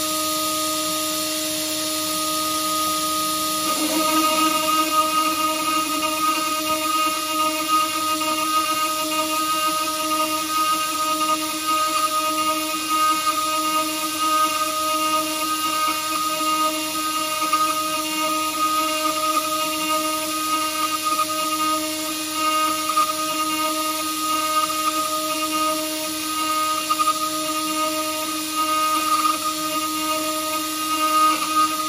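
A CNC wood router's spindle runs with a steady whine. About four seconds in, a 2.5 mm four-flute end mill bites into a steel bar, which the machinist takes for St3 mild steel, with oil. A rough, uneven cutting noise then joins the whine and keeps rising and falling as the mill pockets the steel.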